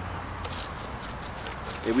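Belgian Malinois running across dry grass: faint scattered footfalls and rustles from about half a second in, over a steady low outdoor rumble. A man's voice starts at the very end.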